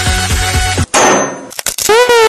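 Music with a steady beat stops abruptly, then one loud metallic clang rings out and fades over about half a second. Electronic dance music starts up near the end.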